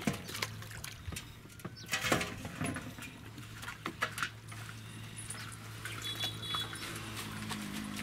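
Scattered splashes and drips of river water as a fish-trap net is hauled up, with fish thrashing in the net; the loudest splash comes about two seconds in.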